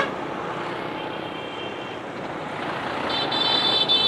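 Road traffic heard from a vehicle moving through it: steady engine and tyre noise, growing louder near the end as a large truck draws alongside. A brief high-pitched tone sounds about three seconds in.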